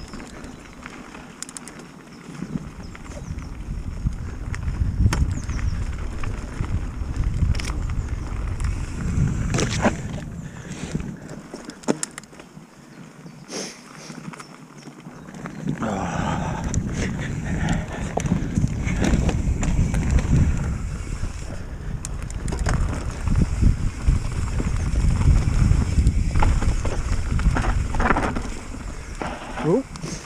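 Wind buffeting the microphone over the rumble of mountain-bike tyres on a dirt trail, with frequent sharp clicks and rattles from the bike over bumps. The wind eases for a few seconds midway.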